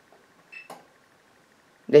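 Gorenje WaveActive washing machine's program selector knob turned one step, a faint click with a short high electronic beep about half a second in, as the manual service test advances from the heating step to the next.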